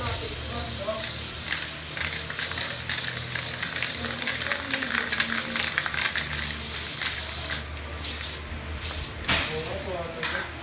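Aerosol spray-paint can spraying in a close, steady hiss while filling in letters on a wall, breaking into short bursts with brief pauses near the end.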